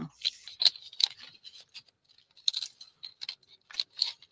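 Small scissors snipping through paper in a series of short, irregularly spaced snips.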